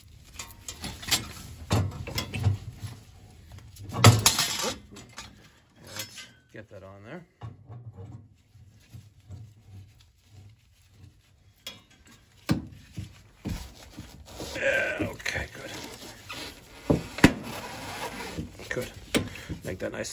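Irregular metallic clinks, knocks and rubbing as a replacement standing-pilot gas valve is handled and threaded onto the boiler's gas piping by gloved hands. The loudest knocks come about four seconds in and again near the end.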